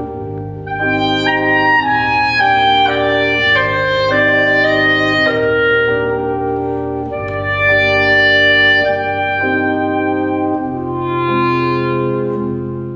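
Clarinet playing a slow melody over long held chords on an electronic organ.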